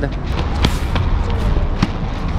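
A few sharp footfalls and a landing knock from a parkour runner's shoes on stone paving during a tic-tac attempt, over steady outdoor street and wind rumble.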